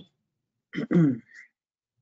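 A person clears their throat once, about a second in.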